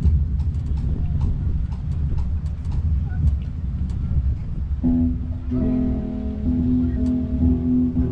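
Low rumble with scattered light clicks, then about five seconds in an electric guitar starts the intro of a country song, letting held notes ring.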